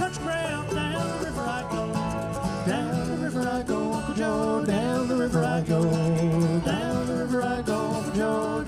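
Acoustic string band playing an old-time song: strummed acoustic guitar, mandolin, five-string banjo and bowed viola da gamba, with a sung vocal line over the steady accompaniment.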